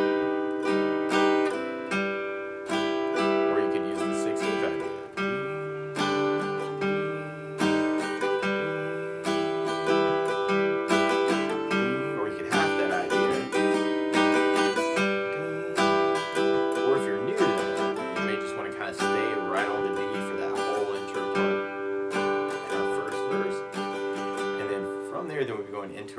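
Acoustic guitar capoed at the fifth fret, strummed steadily through its chords in a pattern of a bass note followed by down-up strums. It fades out near the end.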